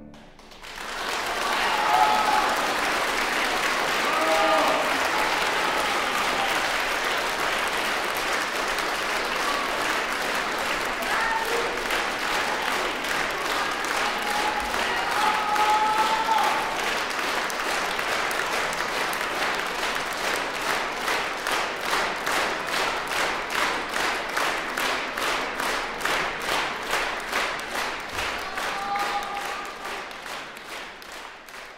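Concert hall audience applauding as a piece ends, the clapping swelling quickly, with a few scattered shouts from the audience. About twenty seconds in, the applause settles into a steady rhythm of clapping in unison.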